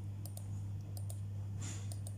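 Spinning name-picker wheel on a laptop giving a run of sharp, unevenly spaced ticks from its speaker, over a steady low electrical hum.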